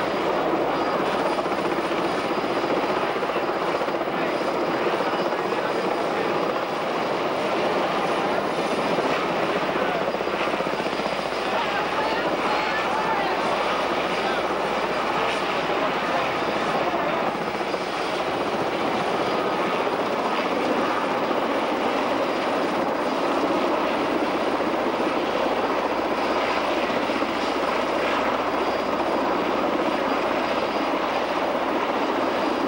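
A single-rotor helicopter flying overhead, its engine and rotor making a steady, unbroken noise.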